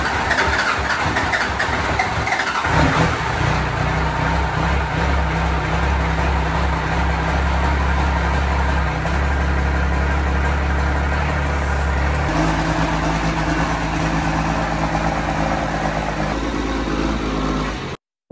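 Vintage truck's engine cranking on its first start of the year, catching after about three seconds and running steadily. Its low note changes about twelve seconds in.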